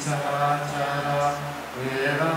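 Buddhist chanting in Pali: voices reciting on a nearly level, held pitch, with a brief break near the end before the next line.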